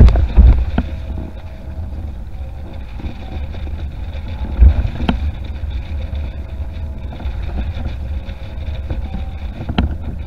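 Wind rumbling on the microphone of a board-mounted camera on a Severne RedWing windfoil board. The board's hull splashes through the water at the start, and there is another loud surge about four and a half seconds in.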